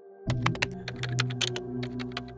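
Rapid, irregular clicks of computer keyboard typing, starting about a quarter second in, over a low sustained music drone.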